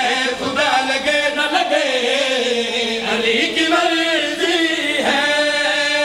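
Male voice chanting a devotional qasida (Shia praise poem for Ali) in long, drawn-out notes that slide slowly up and down.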